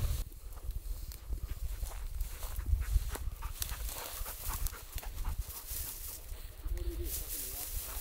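Walking through tall dry grass: footsteps and stems rustling and snapping, over a low rumble of wind on the microphone, with a dog panting close by.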